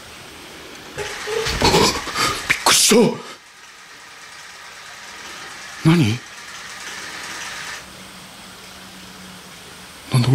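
Human voices speaking in short phrases during the first three seconds, then a brief loud vocal sound just before six seconds in, over a steady low hiss.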